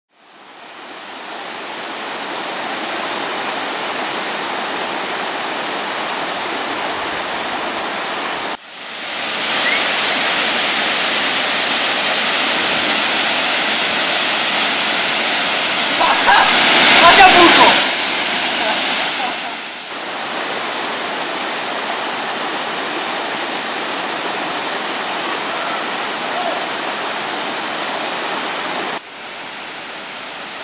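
Steady roar of a waterfall pouring into its pool. It fades in at the start and jumps in level at a few abrupt cuts, louder through the middle stretch. About halfway through, a person's voice is briefly heard over the falling water.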